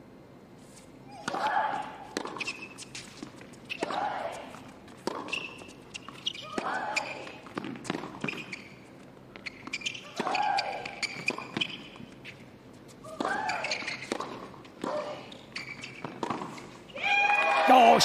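A baseline tennis rally on a hard court: racket strikes on the ball trading back and forth every second or so, most of them with a player's short grunt. Near the end comes a louder burst of voice as the point finishes.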